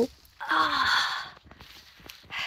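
A woman's breathy, voiced sigh, about a second long and falling slightly in pitch.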